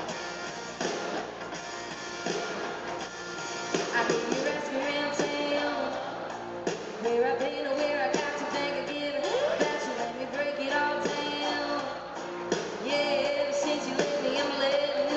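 Live country band music played through an arena PA and recorded from the audience: electric guitar over a steady drum beat.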